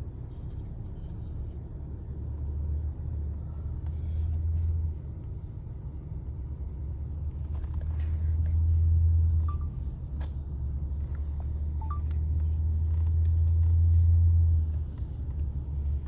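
Low rumble of a car driving slowly, heard from inside the cabin. It swells three times and drops back sharply after each swell.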